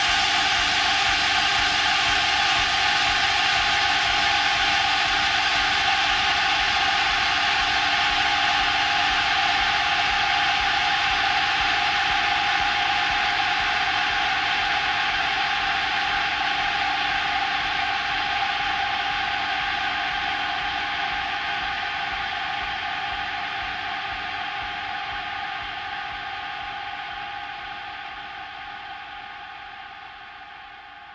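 Yamaha AN1x virtual-analog synthesizer with effects holding a sustained drone: a wash of noise over a few steady tones, with no beat. It fades out slowly over the second half as the piece ends.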